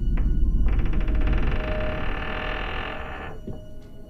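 Horror film score sting: a sudden deep rumbling hit, joined about a second in by a dense, shrill high layer that cuts off abruptly after about two and a half seconds, while the low part fades away.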